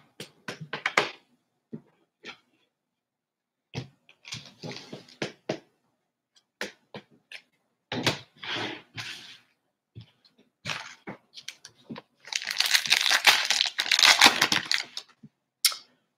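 Foil trading-card pack wrappers crinkling and being torn open, with cards being handled, in short rustling bursts and a longer stretch of crinkling a few seconds before the end.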